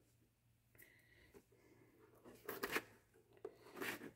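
Faint rustling and crackling of thin protective plastic film being peeled and rubbed off a plastic welding-helmet shell, with a short, louder burst of crackle about two and a half seconds in.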